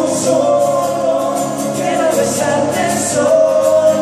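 Live acoustic pop music: male voices singing together over two acoustic guitars.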